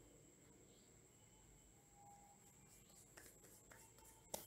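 Near silence: faint room tone, with a couple of faint short clicks near the end.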